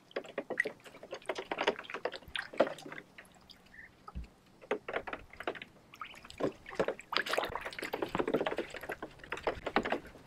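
Muscovy ducks dabbling and splashing with their bills in the shallow water of a plastic kiddie pool as they hunt feeder fish: irregular small splashes and slurps. There is a lull with a single low thump about four seconds in, and the splashing grows busier over the last three seconds.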